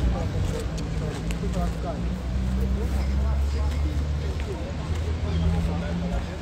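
Low, steady engine rumble from a running vehicle, with faint voices in the background.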